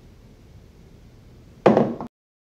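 Quiet room tone, then near the end a short, loud knock as glass vessels are set down on a tabletop.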